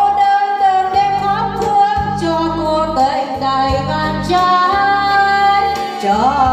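A woman singing into a microphone, holding long notes, backed by an electronic keyboard with a pulsing bass line.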